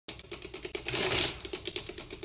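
Typewriter sound effect: a rapid, uneven clatter of key strikes, with a louder burst of noise about a second in.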